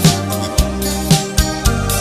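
Roma band playing in a rehearsal recording: sustained chords over a steady drum beat, about three to four strokes a second.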